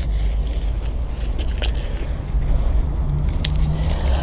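Soil being pushed and pressed by gloved hands into a plastic pot, giving faint scattered crackles and scrapes over a steady low rumble. A brief low hum comes in about three seconds in.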